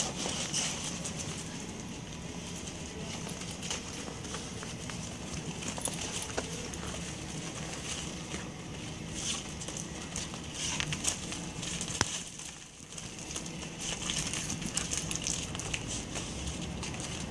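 Dogs' paws scuffling and crunching on crusty snow, a steady run of small scattered clicks and scrapes as two dogs move about and play.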